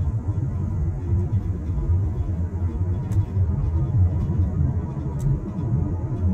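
Low, steady rumble of a car driving on a paved road, heard from inside the cabin, with a couple of faint clicks.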